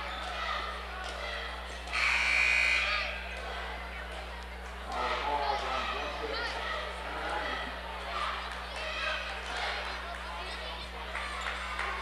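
Gymnasium crowd chatter and scattered voices during a stoppage in a basketball game, with a basketball bouncing on the hardwood floor. A steady buzzer-like tone sounds for about a second, starting about two seconds in.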